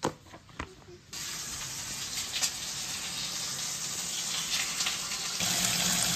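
Slices of tofu sizzling as they pan-fry in oil in a skillet: a steady sizzle that starts about a second in, after a couple of faint clicks, and grows louder near the end.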